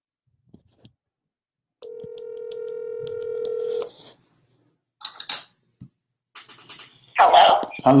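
Telephone ringback tone heard through the phone's speaker: one steady ring about two seconds long that grows slightly louder, followed by a few clicks as the call is answered. Speech begins near the end.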